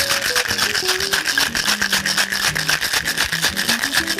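A cocktail shaker being shaken vigorously, its contents rattling inside in a fast, even rhythm, with background music.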